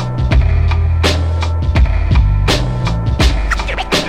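Boom bap hip hop instrumental: a slow drum beat with sharp snare hits about every second and a half over a deep bass line and a looped sampled melody, with short turntable scratches near the end.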